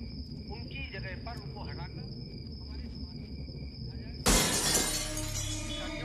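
Glass shattering in a sudden loud crash about four seconds in, fading over the next second. Before it there is faint chirping and a steady high tone, which cuts off at the crash.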